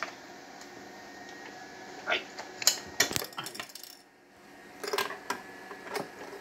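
Sharp clicks and metallic clinks as the top cover of a Vigorelli sewing machine is unlatched and lifted off. There are knocks about two and three seconds in and again about five seconds in.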